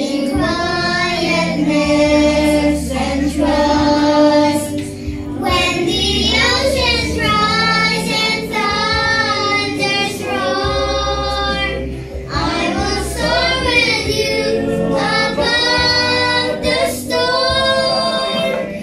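Children's and a woman's voices singing a slow worship song together through microphones, with sustained low accompaniment notes that change every couple of seconds beneath the voices.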